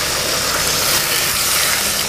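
Water poured from a jug into a hot pan of fried fish and potatoes in masala, hissing and sizzling as it hits the hot oil.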